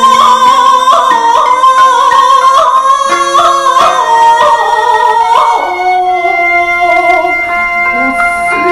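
A woman chanting shigin (classical Japanese chanted Chinese poetry). She holds long notes that waver through small ornamental turns, over sustained instrumental accompaniment.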